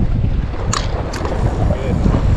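Wind buffeting the camera's microphone: a steady, loud low rumble, with a couple of short clicks about three-quarters of a second and a second in.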